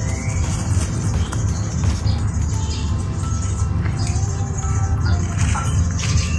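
Background music at a steady level.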